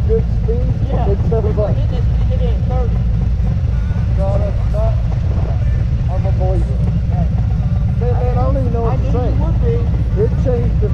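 Two men talking over the steady low rumble of idling Harley-Davidson touring motorcycle engines.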